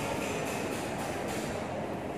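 Steady rumbling background noise with no distinct events.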